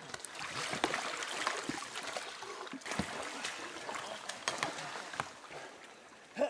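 River water sloshing and splashing as men crawl over a chain of floating plastic cases, with scattered short knocks.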